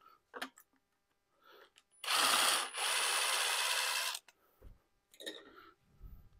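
Light clicks and knocks of hand tools on the engine, then about two seconds in a steady rushing noise from a workshop tool lasting about two seconds with a brief break, its first part carrying a thin high whistle.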